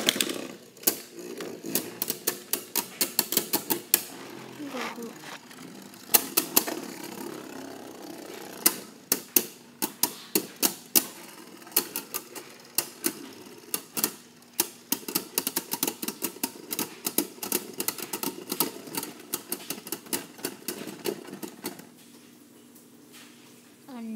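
Two Beyblade Burst spinning tops whirring in a plastic stadium and clashing again and again, with sharp plastic-and-metal clacks coming in quick irregular runs. Near the end the hits thin out as the tops slow down and stop.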